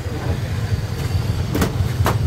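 Steady low rumble of outdoor background noise, with two sharp knocks near the end.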